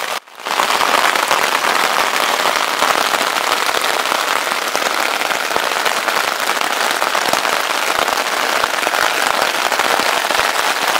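Rain falling steadily on a nylon tent fly and the wet granite outside, heard loud from inside the tent as a dense patter, after a brief dropout just at the start.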